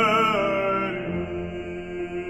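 Baritone holding a sung note with vibrato over piano accompaniment; the voice stops about a second in and the piano carries on alone, a little quieter.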